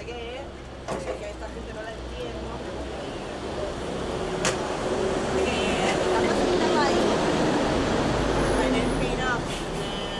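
A road vehicle passing in the street, its engine and road noise building over several seconds, peaking past the middle and easing near the end, over a steady low traffic hum.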